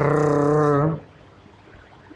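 A man's voice holding one steady, drawn-out vowel sound for about a second, then quiet room tone.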